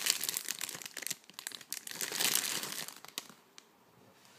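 Clear plastic wrapping crinkling and crackling as a small glass candle is pulled out of it by hand; the crinkling stops about three seconds in.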